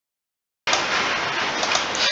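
Dead silence, then about two thirds of a second in a steady, fairly loud hiss switches on abruptly and carries on evenly.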